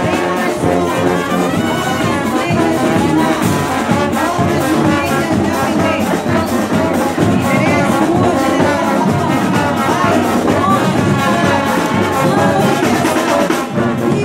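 Marching band's brass section playing a tune, loud and continuous, with trumpets, trombones, euphoniums and a sousaphone sounding together.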